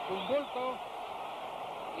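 Old boxing TV broadcast audio, band-limited: a commentator's voice, quieter than the surrounding talk, over a steady haze of arena crowd noise.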